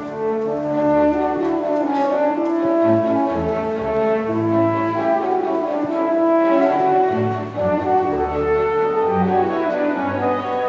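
French horn playing a solo melody of held notes that step from pitch to pitch, over orchestral accompaniment.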